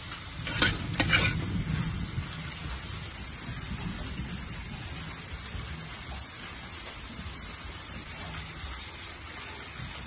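Stir-fried crab sizzling in a hot pan, with a metal ladle striking or scraping the pan twice in the first second or so. After that the sizzle goes on as a steady hiss.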